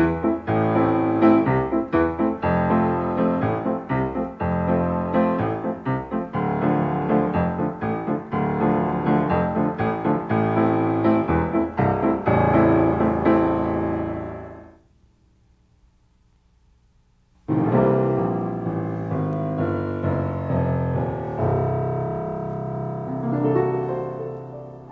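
Piano chords played in a rhythmic, syncopated pattern with doubled bass notes in the left hand. The playing dies away about 15 s in, and after a couple of seconds of near silence a second piano passage begins.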